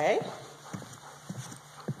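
A person's footsteps on a hard indoor floor: a few light, separate steps after a short vocal sound right at the start.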